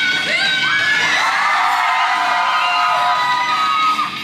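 A concert audience shouting and cheering over rock backing music, with a long held high note through most of it.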